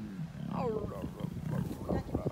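Lioness vocalizing low, with a short falling call near the start.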